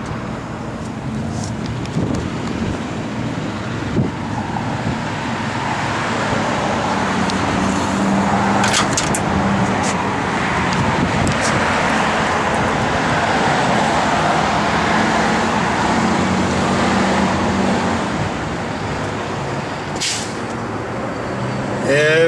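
A small-block V8 in a 1956 Chevrolet 3100 pickup running steadily at idle through its dual exhaust. A rushing noise swells up through the middle and eases off near the end, with a couple of short clicks.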